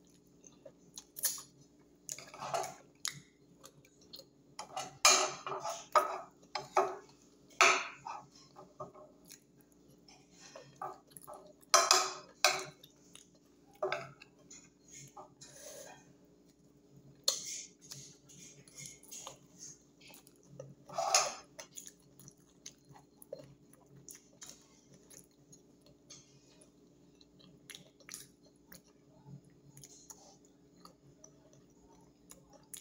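Close-up chewing and biting of fish eaten by hand: irregular wet mouth smacks and clicks, with occasional clinks of a fork against a glass dish. A steady low hum runs underneath.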